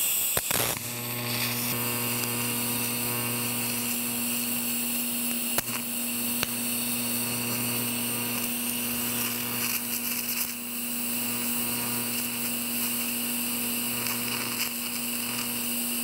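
TIG welding arc buzzing steadily with a hiss, struck just under a second in, as a torch heats a cracked cast iron vise casting to flow bronze filler into the crack: TIG brazing, heating without melting the base metal.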